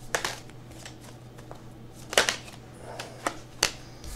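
Tarot cards being shuffled by hand: several short, sharp card clicks, the loudest about two seconds in.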